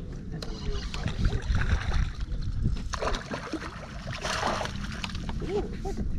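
Wind rumbling on the microphone and water moving around a bass boat while a hooked bass is brought in, with brief splashes about three seconds in and again around four and a half seconds in.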